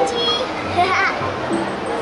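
Background voices, including children's voices, with music playing.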